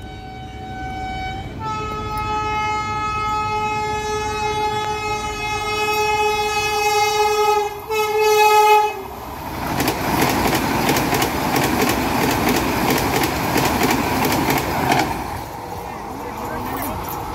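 Indian Railways electric locomotive's air horn sounding a long blast of about six seconds, then a short second blast. After that the train rushes past loud and close, its wheels clattering over the rail joints.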